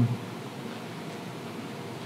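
Steady, even background hiss of the room and recording, a pause between words; the tail of a spoken "um" sounds at the very start.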